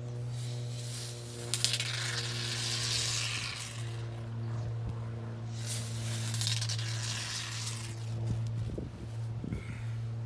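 Expanding spray foam hissing out of an aerosol can in two bursts, the first about a second and a half in and lasting about two seconds, the second shorter near six seconds in. A steady low hum runs underneath.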